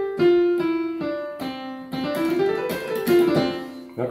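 Yamaha PSR-540 home keyboard on a piano voice playing a one-handed C major scale in single notes, stepping down to middle C, then a few notes rising again and a low note near the end.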